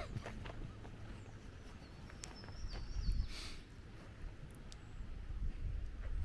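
Outdoor ambience dominated by a low rumble of wind on the microphone, with a few faint clicks and a short, thin high chirp a few seconds in.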